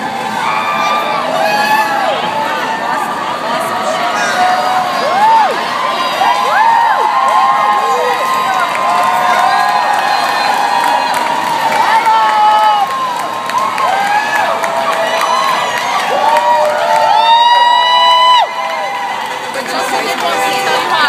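Parade crowd cheering and whooping, many voices yelling over each other with rising and falling whoops. Near the end one loud, close whoop is held for about a second and a half and cuts off suddenly.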